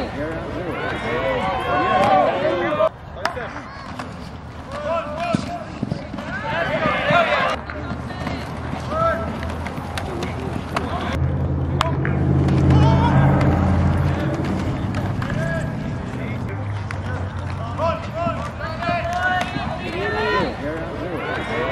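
Indistinct shouting and calling voices from players and the sideline at an outdoor football game. About halfway through, a low steady drone swells for a few seconds and then fades.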